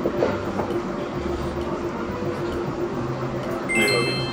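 Steady dining-room background noise with a low, even hum. Near the end a bright, ringing chime-like tone comes in suddenly.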